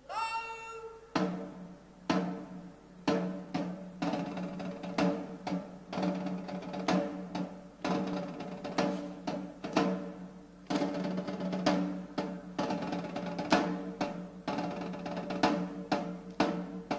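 Military snare drum beating a slow march, about one stroke a second with quicker strokes and short rolls between them, starting about a second in.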